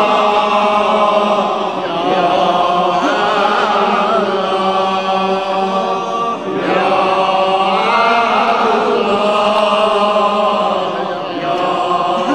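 Male voices chanting an Islamic devotional supplication (munajat) in long melismatic phrases over a steady low drone note, with short breaks between phrases.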